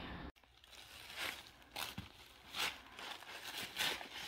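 Faint rustling and crinkling of tissue paper in a gift bag, in a few short bursts, as it is pulled at.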